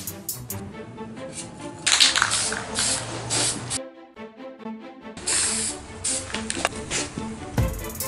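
Background music with a steady beat, over which an aerosol can of black primer sprays twice. There are two hissing bursts of about two seconds each: the first starts about two seconds in, the second follows a second or so after the first ends.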